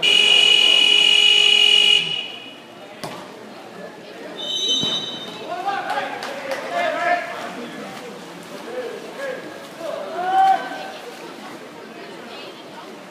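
A loud, steady electronic buzzer from the pool's game clock sounds for about two seconds. About two and a half seconds later comes a short, high whistle blast, likely the referee's, and then shouting voices.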